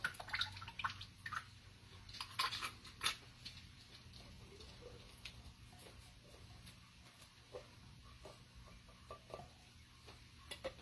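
Faint, scattered clicks and soft wet plops: a utensil scraping the contents out of a tin can into a slow cooker. There is a sharper click about three seconds in.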